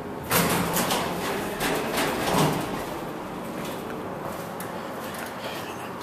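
Dover hydraulic elevator's doors sliding open, with a sudden rush of noise about a third of a second in that surges a few times and fades out over the next two seconds or so.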